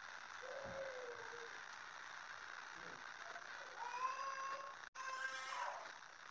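Faint, short pitched vocal calls in the background. One falls in pitch about half a second in, then two longer ones come about four and five seconds in, the first of them rising.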